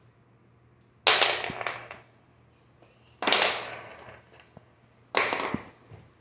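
Marbles clattering on a hard floor in three sudden rattles about two seconds apart, each dying away within a second.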